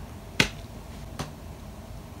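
Two sharp clicks under a second apart, the second fainter.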